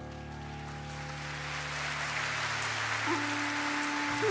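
Big band holding a low sustained chord while a hissing, rain-like wash swells up beneath it. About three seconds in, a bawu (Chinese free-reed bamboo flute) starts a simple melody in clear, almost pure tones.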